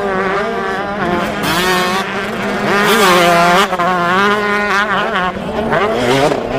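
Motocross dirt bike engines revving, their pitch rising and falling with throttle and gear changes over a steadier low engine note.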